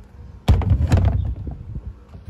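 A sudden loud thump about half a second in, followed by about a second of low rumble with a few knocks.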